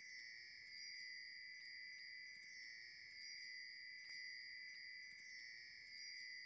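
Faint chime sound effect: a steady high ringing tone with light tinkles about twice a second.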